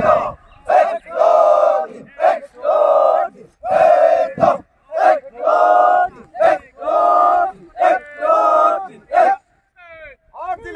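A squad of police recruits shouting drill calls together in unison: a string of loud calls, roughly one a second, that stops shortly before the end.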